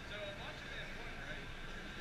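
Low outdoor background noise with faint, distant voices murmuring.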